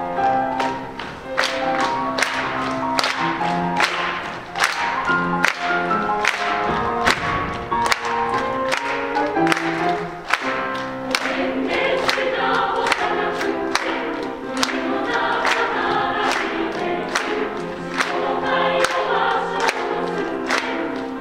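Girls' high-school choir singing in parts with piano accompaniment, the music carried on a steady, even beat.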